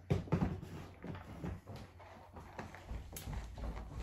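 Footsteps and knocks of a person walking back into a room, starting with one sharp knock, followed by irregular softer steps and shuffles, and a low rumble building near the end.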